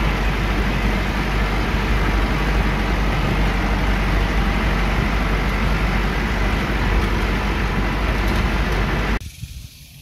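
Farm tractor engine running steadily, heard from inside the open cab, with a strong low rumble; it cuts off abruptly about nine seconds in.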